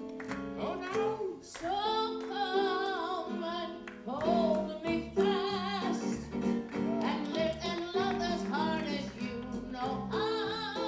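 Live singing on stage: a voice holding sung notes with a wide vibrato over steady instrumental accompaniment chords.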